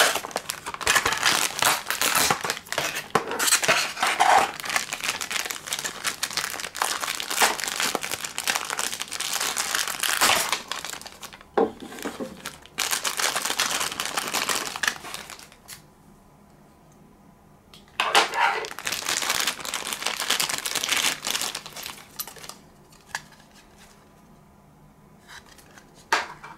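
Thin clear plastic packaging crinkling and crackling as it is handled and pulled apart, in three long stretches with quiet pauses between.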